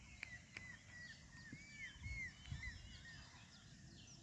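Faint bird calls: a run of short, arched chirps, a few each second, that fade out near the end, with two sharp clicks near the start.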